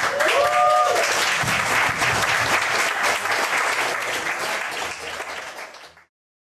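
Small bar audience applauding at the end of a stand-up set, with one short call from the crowd near the start. The clapping fades toward the end and cuts off suddenly.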